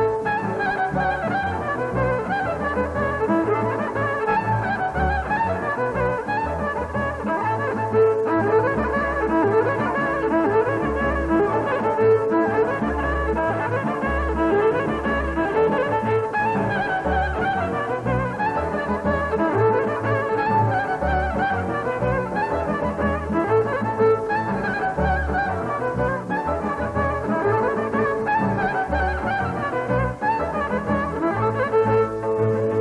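Romanian folk band playing an instrumental tune: violin and clarinet carry the melody over a double bass pulsing out the beat.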